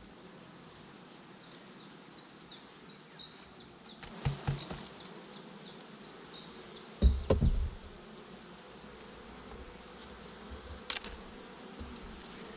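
Honeybees buzzing in a steady hum as the cover of their hive is lifted off and the frames are opened up. Wooden knocks from handling the cover come about four seconds in, with a louder thump around seven seconds. A bird repeats a short chirp about three times a second through the first half.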